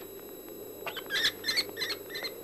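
A quick series of short, high-pitched chirps starting about a second in, over a steady low hum.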